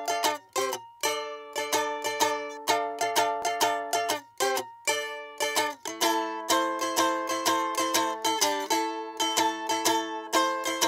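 Balalaika and acoustic guitar playing an instrumental intro in quick, repeated strummed chords, with short breaks early on and a fuller, steadier strum from about six seconds in.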